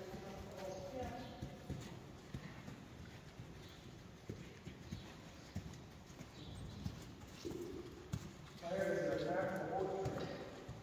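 Friesian horses walking on arena sand: irregular, fairly faint hoof falls. Indistinct voices join in near the end.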